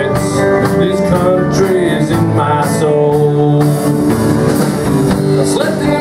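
Live country band playing: acoustic guitars, keyboard and drums, steady and full throughout.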